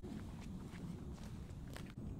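Faint footsteps of a person walking, a few soft, irregular steps over a low background rumble.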